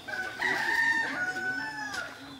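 A rooster crowing once: one long call of nearly two seconds that drops in pitch at the end.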